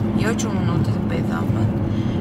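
Steady low rumble of a moving car, heard from inside the cabin, with a constant low hum under a woman's talking.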